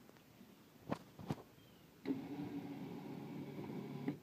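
Two light clicks about a second in, then an electric winch motor on a Bad Boy Buggy's front bumper runs steadily for the last two seconds, letting a raised golf cart back down, and stops abruptly when the switch is released.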